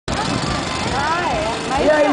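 Racing go-kart engines running on the circuit, heard as a steady noise, with an announcer's voice over it near the middle and end.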